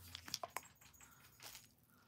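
Faint, scattered small clicks and taps from handling a fountain pen and its packaging, most of them in the first second and one more about a second and a half in.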